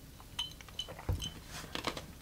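Ice cubes in a rocks glass clinking lightly as an iced cocktail is sipped: a few short clicks with brief glassy rings, and a soft low thump about a second in.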